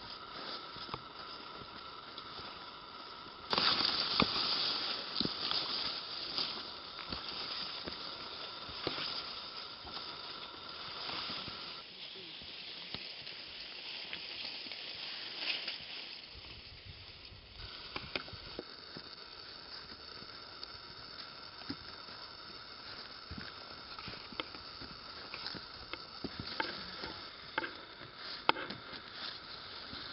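Bamboo grass (sasa) rustling and brushing against a hiker and the camera while walking a narrow overgrown trail, with scattered footsteps. The brushing gets suddenly louder about three and a half seconds in.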